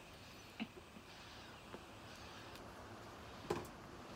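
A tobacco pipe being lit with a lighter: faint clicks and a soft hiss while the pipe is drawn on, with one sharper click near the end.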